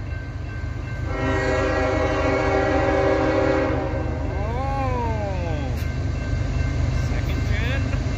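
Lead locomotive's multi-chime air horn, a Nathan K5HL on a GE ES44AH, sounding one long steady blast for the grade crossing that starts about a second in and lasts nearly three seconds, over the steady low rumble of the approaching diesel freight train.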